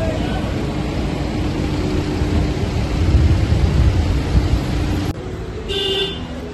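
Low rumble of vehicle traffic, swelling about three seconds in and cutting off abruptly about five seconds in.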